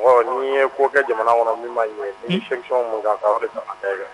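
Speech only: one voice talking steadily in a radio broadcast, with brief pauses between phrases.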